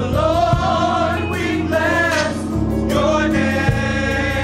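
Gospel choir singing long, held notes with a wavering vibrato, over a steady low accompaniment.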